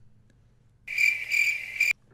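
Cricket chirping sound effect, a high-pitched pulsing trill that starts about a second in and cuts off suddenly just before the end: the stock comic cue for an awkward silence after a question nobody can answer.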